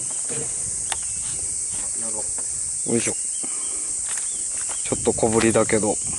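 A steady, high-pitched chorus of insects running throughout, with a man's drawn-out excited "ooh" exclamations over it about three seconds in and again near the end.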